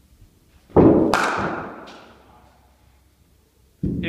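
A cricket ball thuds onto the artificial-turf pitch, and a third of a second later it is struck by the bat with a sharp crack. Both ring on in the reverberant indoor net hall.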